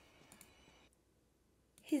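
Near silence: a faint hiss with a few faint clicks, which cuts off about a second in to dead silence, followed near the end by a woman starting to speak.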